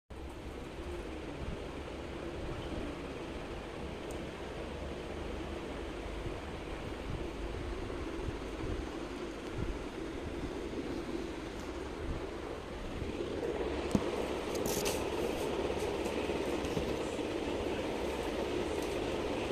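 Steady room hum with low bumps and rustles from the recording phone being handled and moved. The hum grows louder about two-thirds of the way through, and there is one sharp click shortly after.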